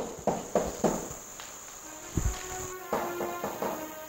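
A steady high-pitched insect-like trill, like a cricket, that stops about two-thirds of the way in. Under it are a string of irregular sharp knocks or rustles and faint background music.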